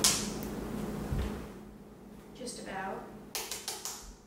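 Kitchen items being handled on a countertop: a sharp click at the start, a soft knock after about a second, and a quick run of clicks and taps near the end, over a steady low hum.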